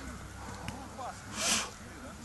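Faint voices of people talking in the background, with a short loud hiss about a second and a half in.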